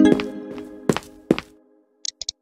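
A short musical sound-effect sting: a ringing chord with a few sharp percussive hits, dying away after about a second and a half.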